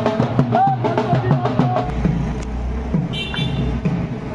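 Procession band music of drums beating a quick, steady rhythm. After about two seconds the drumming drops back behind a low rumble, and a brief high tone sounds near the end.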